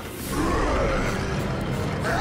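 A cartoon monster's growl, coming in about half a second in, over dramatic background music.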